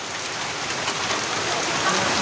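Rain falling steadily, a dense even hiss.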